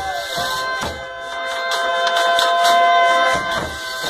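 Accordions and acoustic guitars playing Brazilian folia de reis music: the accordions hold a steady chord while the guitars strum, swelling louder in the middle.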